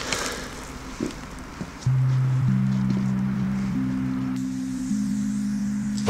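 Background music of low held notes. They come in about two seconds in, with higher notes added one after another, over a faint background with a couple of soft clicks.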